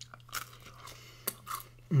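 A person biting and chewing crunchy food close to the microphone: about four short, sharp crunches, then a contented "Mmm" right at the end.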